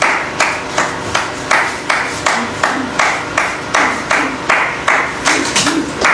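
Hands clapping in a steady rhythm, about three claps a second.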